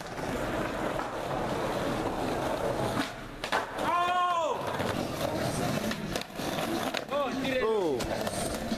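Skateboard wheels rolling over rough, cracked concrete pavement: a steady rolling noise with a few sharp clicks. Two drawn-out voice calls rise over it, one about halfway through and another near the end.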